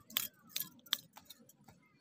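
A run of sharp clicks, about three a second, growing fainter after the first second.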